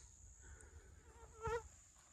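A flying insect buzzing close past the microphone: a wavering whine that swells to its loudest about a second and a half in, then fades. Under it runs a faint, steady, high-pitched insect drone.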